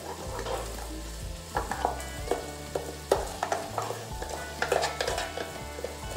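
Thick, wet paste being scraped and tipped out of a stainless steel container into a steel pot: a run of short irregular scrapes, squelches and light metal knocks.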